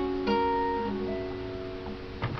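Acoustic guitar playing the closing notes of a song: single notes picked about a quarter second in and again about a second in, left to ring and fade away.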